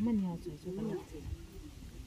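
Speech: people talking at conversational level, with two voices overlapping briefly about half a second in.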